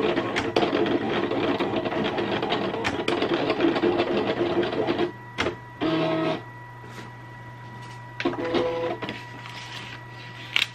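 Silhouette Cameo cutting plotter's motors whirring as the blade carriage and rollers drive the blade through vinyl on the carrier mat. The whirring runs for about five seconds, then comes in two short bursts of movement, with a steady low hum between them.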